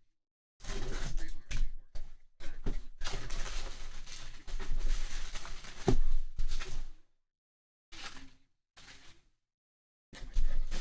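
A cardboard shipping box being opened and handled, with bubble wrap rustling and crinkling as it is pulled out. The sounds come in irregular bursts of scraping and rustling, with a brief knock about six seconds in and two short rustles near the end.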